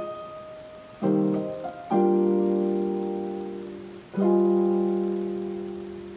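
Yamaha digital keyboard on a piano voice playing sustained chords in C minor: new chords struck about one, two and four seconds in, each left to ring and fade.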